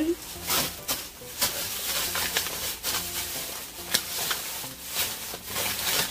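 Plastic bags and plastic toy packaging crinkling and rustling as they are handled, with irregular crackles throughout.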